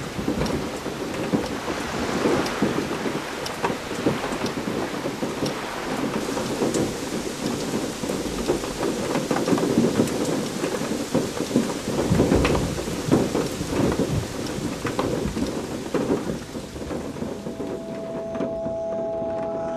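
Heavy rain falling steadily with rolls of thunder, the strongest rumble about twelve seconds in.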